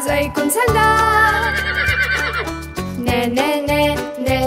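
A horse whinnying, one long call with a shaking pitch about a second in, over bouncy children's music with a steady beat.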